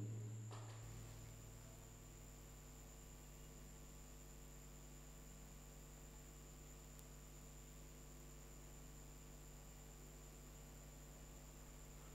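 Near silence: a faint steady electrical hum and hiss on the line.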